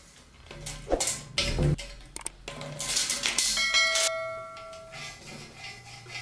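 Steel rectangular tube knocking on a metal workbench: a few knocks, then a clang about three and a half seconds in that rings on with a bell-like tone for about a second and a half.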